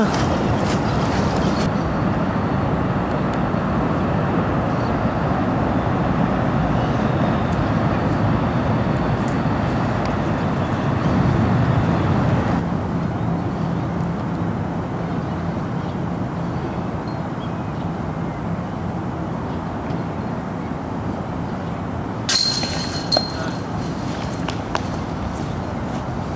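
Steady low background rumble with no clear single source, and a few brief clicks near the end.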